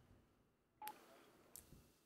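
Mobile phone keypad beep as a number is dialled: one short tone a little under a second in, then a faint tick, over near silence.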